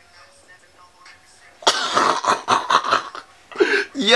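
A man bursting into loud, breathy, choppy laughter about one and a half seconds in, over faint background music, with a short voiced sound near the end.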